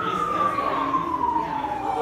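An emergency vehicle's siren wailing, its single tone sliding slowly down in pitch and then starting to climb again at the end.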